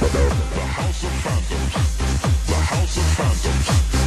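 Italo dance track with a fast, steady, pounding kick-drum beat and electronic synth layers.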